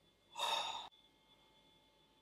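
A man's short, breathy sigh, about half a second long, that cuts off abruptly.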